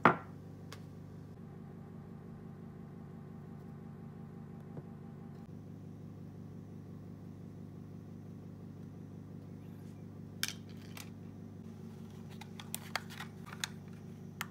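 A single sharp knock at the start, then light clicks and taps of small objects handled on a tabletop in the last few seconds, over a steady low hum.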